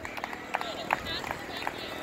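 Horse cantering on sand arena footing: an irregular run of short hoofbeats, with faint voices in the background.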